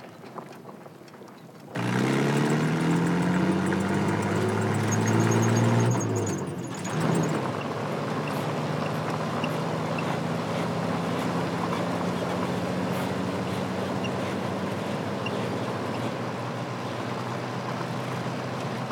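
Truck engine starting to move off about two seconds in, its pitch rising as it revs through the first gear, dropping at a gear change, then running steadily at speed.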